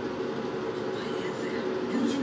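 A steady droning hum over an even rushing noise, with faint voices in the background.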